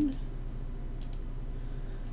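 A few faint clicks of a computer mouse, a couple of them about a second in, over a steady low electrical hum.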